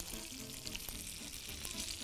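Faint, steady sizzle of food frying in hot oil.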